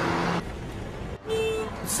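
Street traffic noise, with a short vehicle horn toot about a second and a half in.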